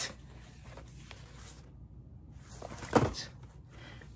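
Quiet rustling as items are handled, with a short, louder rustle or knock about three seconds in.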